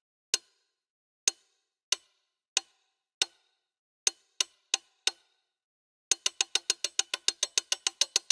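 Sampled pocket-watch ticks played back as a looping pattern: single sharp clicks. They come about every two-thirds of a second at first, speed up to about three a second about four seconds in, and after a short pause run at about six a second as the tempo multiple is raised.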